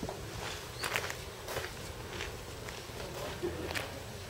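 Footsteps at an even walking pace, about six steps over a steady low rumble.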